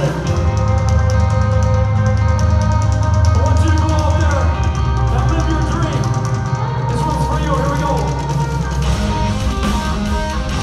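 Live metal band playing: sustained guitar chords over deep bass and drums, loud throughout.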